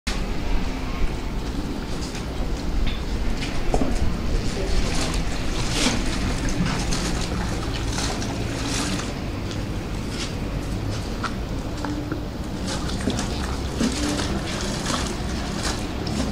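Water sloshing and splashing in a plastic bucket as clothes are washed by hand, in a run of short irregular splashes over a steady outdoor background rumble.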